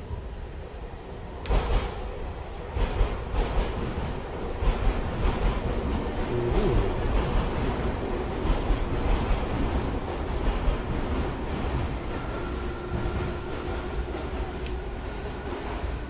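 A train running past: a continuous low rumble with a string of sharp knocks, and a thin steady tone joining near the end.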